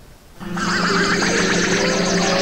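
Electronic time-machine transition effect: a steady low hum with a warbling tone and gliding tones above it, starting about half a second in after a brief lull.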